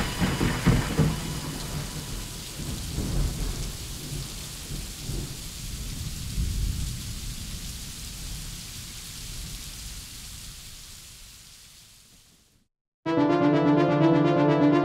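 Rain and thunder rumbling as the outro of an electronic synth track, slowly fading out to silence about twelve seconds in. Just before the end, a new synth piece starts with sustained brass-like chords.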